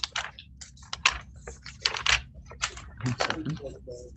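Typing on a computer keyboard: irregular sharp keystrokes, a few per second, with a brief low murmur near the end.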